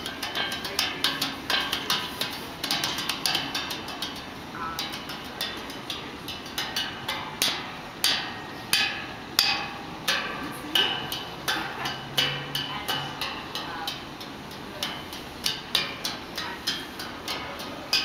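Percussion instruments being struck in an irregular, unrhythmic run of sharp knocks and clacks, several a second.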